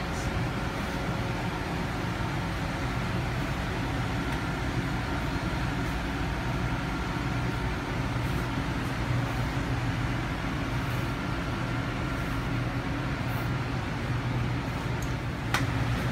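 A steady, low mechanical hum that holds even throughout, with a single sharp click near the end.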